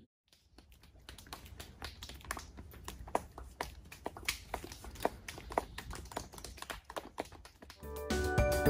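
A group of people making hand sounds, finger clicks and soft claps, a scattered, irregular patter of many small clicks starting about a second in, imitating the sounds they heard in the woods.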